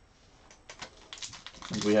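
Trading cards and a foil card pack handled by hand: a quick, uneven run of small clicks and rustles, followed by a man starting to speak near the end.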